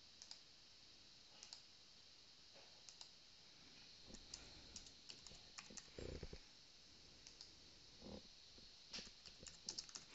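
Faint computer keyboard typing and mouse clicks: irregular, scattered keystrokes, with a couple of duller knocks about six and eight seconds in.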